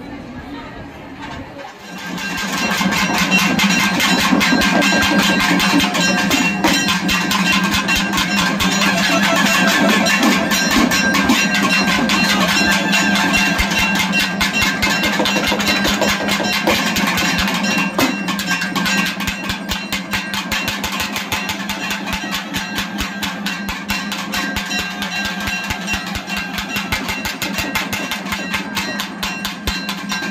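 Festival drum ensemble playing fast, dense beats over a steady held drone, starting loudly about two seconds in.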